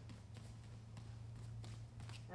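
Bare feet stepping and crossing over on foam training mats: a series of faint, soft taps, over a steady low hum.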